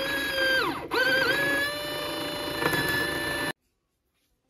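Small brushed DC motor running with a high whine. About half a second in its pitch drops steeply as it bogs down, then it speeds back up, dips briefly once more, and runs steady until it stops suddenly near the end.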